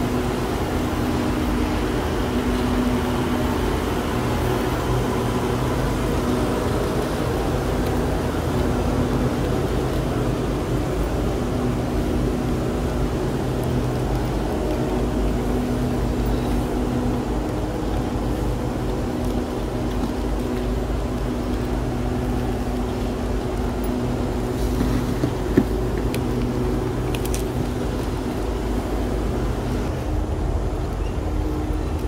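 A parked passenger train's diesel engines running steadily with a low hum, while suitcase wheels roll along the platform. One sharp click near the end.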